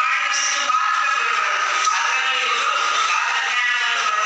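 A woman singing into a microphone through a public-address system, holding long notes.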